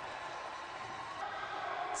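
Steady, featureless ice-arena background noise from a hockey game in play, with no distinct knocks, shouts or whistles.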